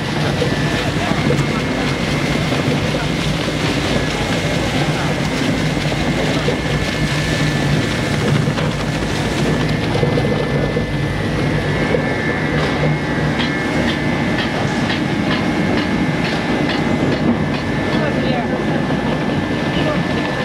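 Single-shaft shredder running loaded with PE aluminized film: a loud, steady industrial drone with a low hum and a thin, steady high whine. Quick ticking from the material being chewed comes in during the second half.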